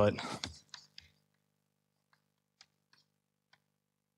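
A few faint, irregularly spaced clicks of chalk tapping on a blackboard as a word is written, over near silence.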